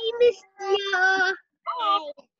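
Young children's high voices calling out drawn-out, sing-song greetings over a video call, three held calls with short breaks between them.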